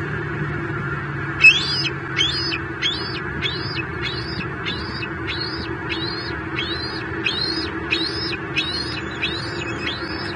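A bird calling in a long, evenly spaced series of about fourteen high, arching notes, roughly three every two seconds, beginning about a second and a half in. Underneath is a steady low hum of road traffic.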